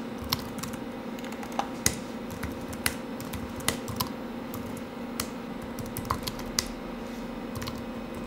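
Computer keyboard keystrokes typed irregularly, single sharp clicks with gaps between them, over a steady low hum.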